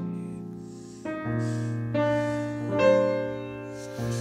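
Solo acoustic piano playing soft, arpeggiated jazz chords, with notes rolled in one after another and left to ring. A new chord enters about once a second, swelling a little near the end.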